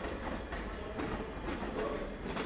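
ScotRail electric multiple unit rolling slowly over pointwork: a steady rumble with the wheels clicking over rail joints and crossings at irregular intervals, and a faint steady whine underneath.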